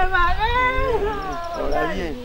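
A person's long, drawn-out vocal cry without words, its pitch rising and then falling and breaking up near the end, over a low rumble.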